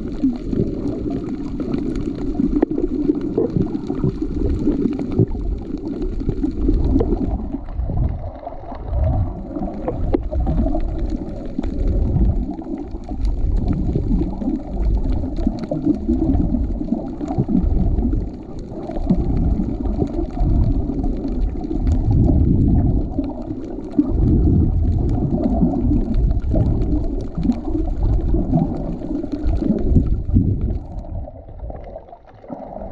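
Muffled water noise picked up by a camera held underwater: a loud, low rumble that swells and eases irregularly, with faint clicks and crackles above it.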